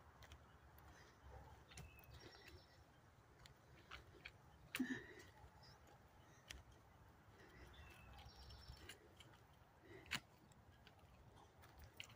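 Near silence in woodland, with a few faint, distant bird chirps. A brief soft thump about five seconds in and a sharp click at about ten seconds stand out slightly above the quiet.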